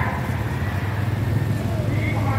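Slow-moving street traffic: car and motorcycle engines running together in a steady low rumble.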